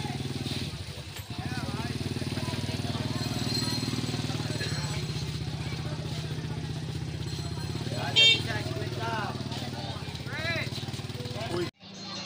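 A small motorcycle engine running steadily close by, with people talking over it. A brief loud sound stands out about two-thirds of the way in, and the sound cuts off abruptly just before the end.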